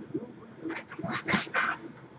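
A dog giving a few short cries about a second in.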